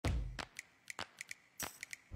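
A low thump at the start, then about nine short, sharp clicks at uneven intervals.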